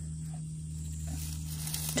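Faint rustle of dry leaf litter and grass as fingers part them, over a steady low hum.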